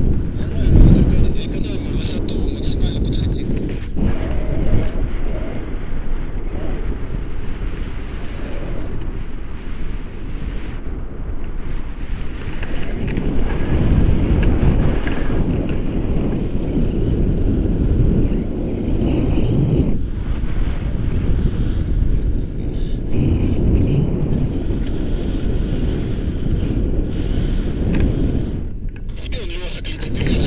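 Wind buffeting the microphone: a loud, surging rumble of noise.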